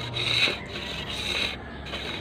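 A knife blade shaving a thin bamboo strip: two scraping strokes along the wood, one at the start and one about a second and a half in. The strip is being thinned so its curve matches the other wing of the kite frame.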